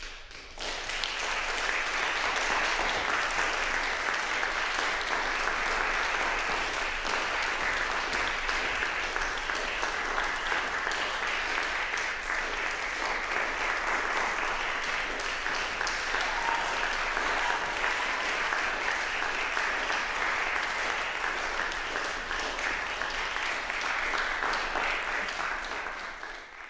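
Audience applauding: dense, steady clapping that begins about half a second in and holds at an even level.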